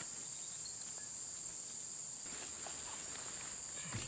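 A steady, high-pitched chorus of insects trilling without a break.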